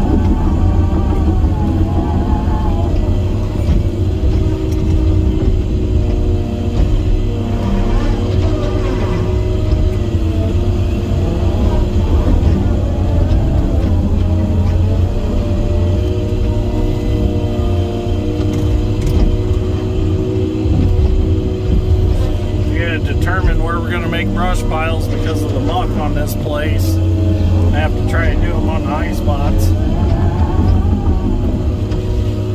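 Timberjack 608B feller buncher's engine and hydraulics running under load while its disc saw head works through brush, heard from inside the cab as a heavy, steady low rumble. From a few seconds before the end, a wavering voice-like sound rises over it.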